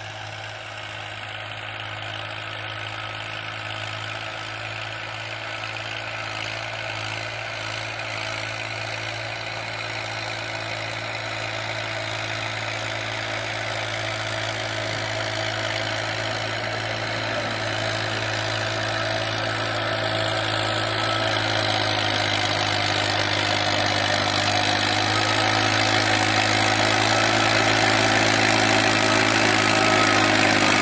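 Tractor's diesel engine running steadily under load as it pulls a cultivator through the field, growing steadily louder as it approaches.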